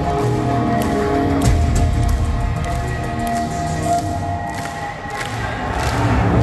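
Live rock band intro played through an arena PA: held keyboard tones over a heavy bass, with the crowd cheering over it.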